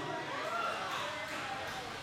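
Bar crowd talking quietly, a faint voice rising out of the chatter, with no music playing.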